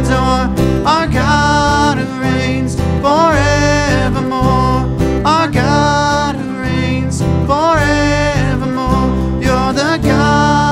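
Live worship band playing a slow song: strummed acoustic guitar, electric bass and keyboard, with a man singing long held notes into a microphone.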